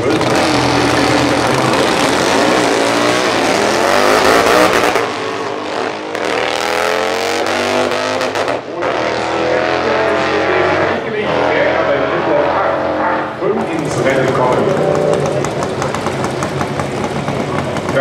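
A pair of twin-cylinder drag motorcycles launching and accelerating hard down the strip, the engine note climbing several times as they shift. Near the end the sound changes to the engines of the next pair of bikes running at the start line.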